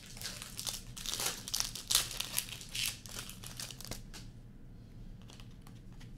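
A foil trading-card pack wrapper crinkling and tearing for about four seconds, loudest in the middle. After that come a few soft clicks of cards being handled.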